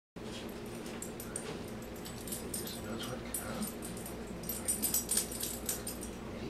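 A dog whining with high clicks scattered through, loudest about five seconds in, over a steady low hum.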